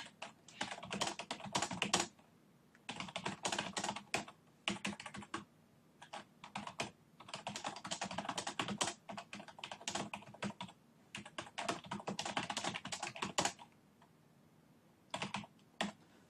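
Typing on a computer keyboard: bursts of rapid key clicks with short pauses between them, and a longer pause near the end before a last few keystrokes.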